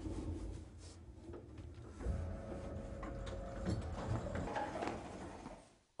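Passenger lift in motion: a low mechanical hum and rumble with scattered knocks and rattles. The sound rises sharply about two seconds in, a steady tone joins it for about two seconds, and it fades away just before the end.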